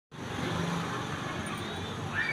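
Steady road-traffic noise with a low engine hum.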